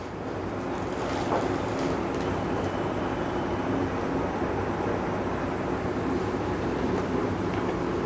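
Steady background hum and rushing noise from a running machine, swelling slightly over the first second and then holding even.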